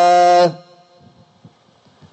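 A voice chanting a line of Gurbani scripture holds a long steady note that ends about half a second in, followed by a quiet pause between phrases.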